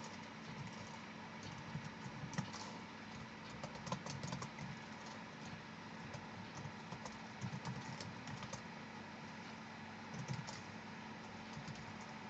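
Computer keyboard typing, faint keystrokes coming in irregular bursts with short pauses between, over a steady low hum.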